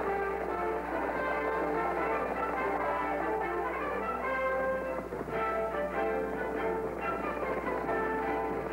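Orchestral film score, with brass and strings playing held notes.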